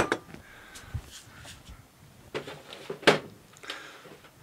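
A sharp clack as a just-removed motorcycle top yoke and mallet are set down on a workbench, followed by scattered lighter knocks and clatters of tools being handled.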